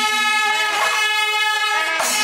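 Panchavadhyam temple ensemble: kombu horns hold a steady blaring tone while a stroke of timila drums and ilathalam cymbals lands about a second in, with another right at the end.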